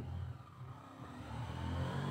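A faint, low engine-like hum in the background, growing a little louder about a second in.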